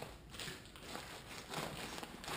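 Faint rustling and light handling sounds of small items being moved around inside a fabric gear bag.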